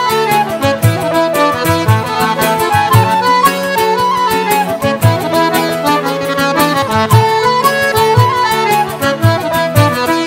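Irish traditional band playing an instrumental passage: flute and accordion carry the melody over acoustic guitar chords, with a bodhrán beating out the rhythm.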